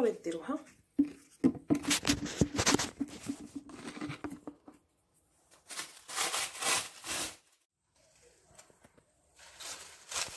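Rustling and handling noises: a few seconds of quick crinkling and scraping, a pause, then a shorter burst of crinkling, like plastic or paper being handled.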